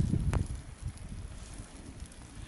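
Wind buffeting the microphone as a low, irregular rumble, with a single sharp click near the start.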